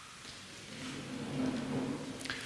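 A congregation getting to its feet: a soft rustle and shuffle of many people standing up from their seats, growing louder about half a second in.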